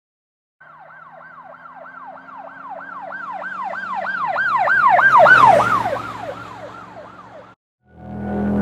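Emergency vehicle siren in a fast yelp, sweeping down and up about three times a second. It passes by, growing louder to a peak about five seconds in with a rush of vehicle noise, then fading and dropping in pitch. It cuts off suddenly near the end.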